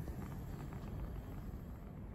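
Steady low rumble and faint hiss of a lit Bunsen burner flame.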